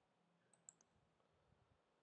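Near silence: room tone, with one very faint click about two-thirds of a second in.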